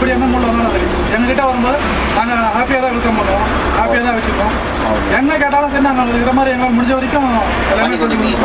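Two men talking in the cab of a moving Ashok Leyland coach, over the steady low rumble of the bus's engine and road noise.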